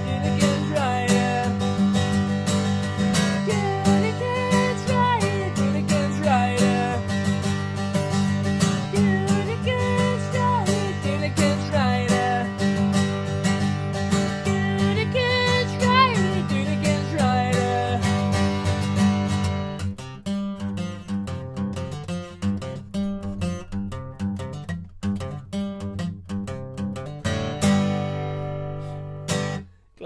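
Acoustic guitar strummed live, with a wavering melody line over a full low accompaniment for the first two-thirds. The accompaniment then drops away, leaving single strums, and a final chord rings out and fades just before the end as the song finishes.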